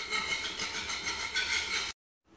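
A hand-held metal blade scraping hardened excess concrete off a cement floor in short, rapid strokes, scraping the floor flat before new flooring is laid. The sound cuts off abruptly near the end.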